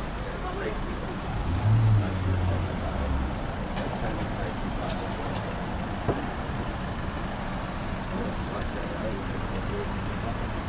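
Town-centre road traffic: cars driving past a junction, with a louder low rumble for a second or two about two seconds in as a vehicle passes close. A single sharp click sounds about six seconds in.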